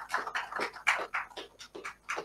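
A quick run of short breathy sounds from a person close to the microphone, about six or seven a second, without voice.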